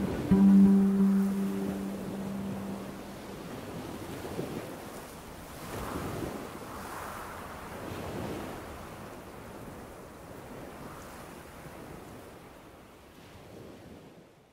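The background music ends on a held low note in the first two or three seconds. After that, waves wash on a pebble beach, swelling and easing every second or two and fading out near the end.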